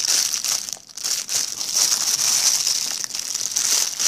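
Plastic bags crinkling as a hand squeezes and handles bagged foam putty, with a brief lull about a second in.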